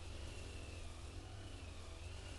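Quiet outdoor background: a steady hiss with a low rumble and a faint, thin high-pitched tone that holds steady.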